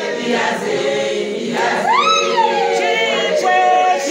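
A congregation of women singing a gospel song together without instruments. About halfway through, one voice rises above the group in a loud high call that slides up and back down, then holds a high note.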